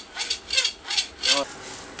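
Hacksaw cutting a white plastic water pipe clamped in a small vise: a run of quick back-and-forth rasping strokes, about two or three a second.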